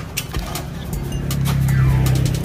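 A motor vehicle's engine running close by, its low hum swelling through the second half, with scattered light clicks and knocks.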